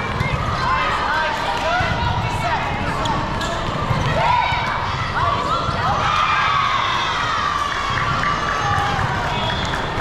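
Volleyball players' shoes squeaking on the sport-court floor during a rally, with a few sharp knocks of the ball, over a constant hubbub of voices in a large hall.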